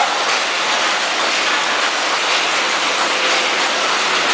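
Vertical packaging machine running, a loud steady mechanical noise with no clear rhythm or pitch.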